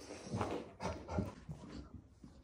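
A dog making about four short noises in quick succession as it rolls on its back and rubs its head along a shaggy rug.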